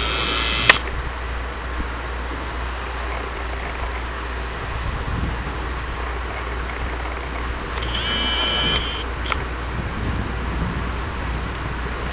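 Steady rushing noise with a low hum underneath, from the running hydroelectric powerhouse and the river below it. Two short high-pitched calls cut in, one at the start and one about eight seconds in, and a single sharp click comes just under a second in.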